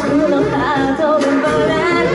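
A woman singing live into a handheld microphone through the venue's PA, a gliding melodic line over backing music.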